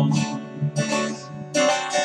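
Acoustic guitar playing a country-blues accompaniment with a capo on the neck: a few strummed chords between sung lines.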